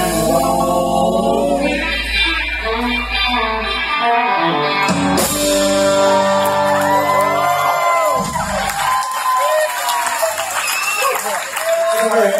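Live band with acoustic and electric guitars, upright bass and drums playing the close of a song with singing. The bass drops out about four seconds in, then long held notes and sliding closing figures thin out toward the end.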